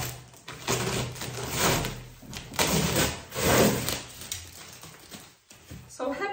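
Packing paper rustling and a cardboard box being handled as a parcel is unpacked, in several irregular bursts.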